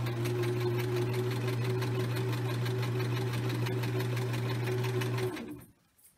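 Electric home sewing machine running at a steady speed while stitching a seam: a motor hum with the needle's rapid, even clatter. It winds down and stops about five seconds in.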